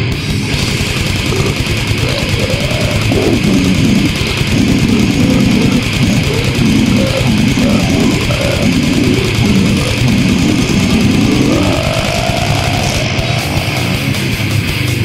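Brutal death metal/goregrind: heavily distorted, down-tuned guitars and bass over fast drumming, with a deep growled vocal line through the middle that slides upward near the end.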